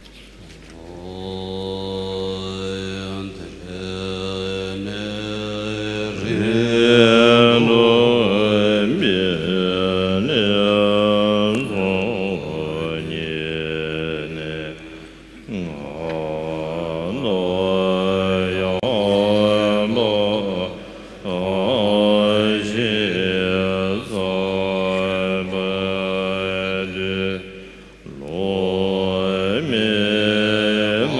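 Tibetan Buddhist monks chanting a prayer liturgy, with a lead chanter on a microphone, in long low sustained phrases broken by short pauses.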